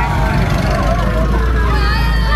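Steady low rumble of a truck engine running close by, with people's voices carried over it.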